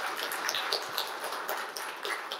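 Audience applause dying away into scattered, irregular claps.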